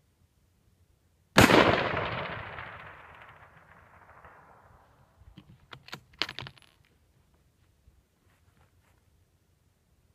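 A single rifle shot from a .308 Winchester bolt-action rifle firing a Hornady 168-grain A-MAX round, its report echoing away over about three seconds. A few seconds later comes a quick run of sharp metallic clicks, the bolt being worked to eject the spent case and chamber the next round.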